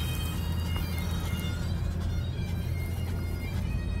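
Bagpipe music with held notes over the steady low rumble of a car driving along a road.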